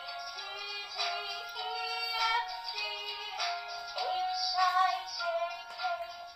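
LITMAS Talking ABC wall chart playing a sung rhyme through its small built-in speaker: electronic-sounding singing over a backing tune.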